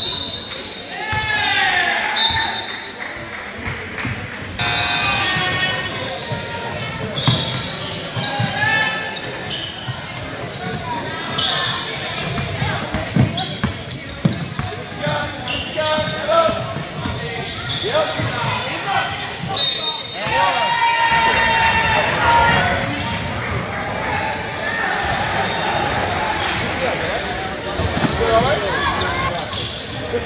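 Basketball game sounds in a large gym: the ball bouncing on the hardwood court, sneakers squeaking in short high bursts, and players and spectators calling out, echoing in the hall.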